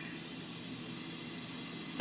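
Kitchen faucet stream running steadily into a stainless steel sink, a soft even hiss. The flow has been turned up so the stream is going from smooth to choppy, laminar to turbulent.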